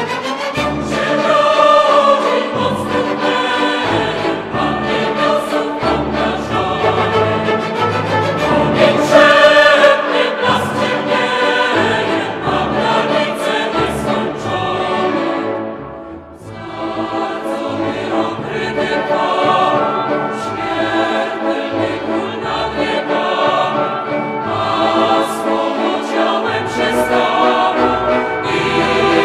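Live orchestra and choir performing a Christmas carol. The music thins briefly about halfway through, then builds again.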